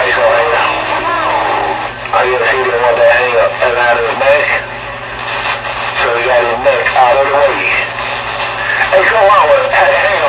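Voices of other stations coming in over a CB radio receiver on skip, too garbled to make out, over a steady low hum.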